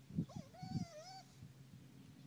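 A short animal call about a second long, high and with a wavering pitch. A few low thumps, the loudest sounds here, come with it.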